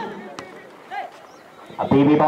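A lull in a man's commentary, with faint outdoor ground noise, one sharp tap about half a second in and a brief high call about a second in. The commentary voice comes back near the end.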